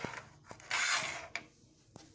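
A small plastic mini football helmet flicked across a wooden tabletop: a light click, then a rasping scrape of plastic sliding on wood for about half a second, followed by a couple of faint ticks.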